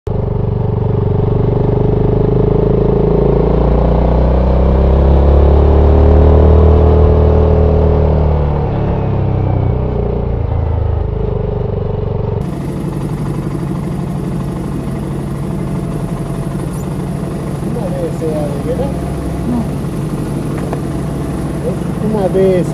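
BSA Gold Star 650's single-cylinder engine pulling through a bend, its pitch rising and falling with the throttle. About twelve seconds in it cuts abruptly to a motorcycle engine running steadily at a standstill, with a man's voice starting near the end.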